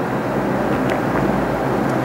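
Steady low background hum and rumble with no speech, and a couple of faint ticks.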